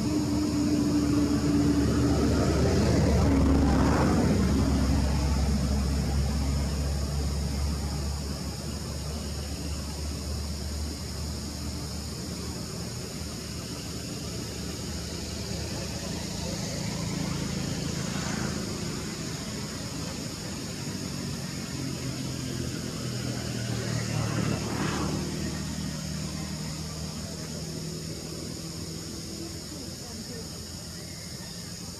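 Motor vehicles passing by over a steady low engine hum: the loudest passes about three to four seconds in, and fainter ones pass around eighteen and twenty-five seconds in.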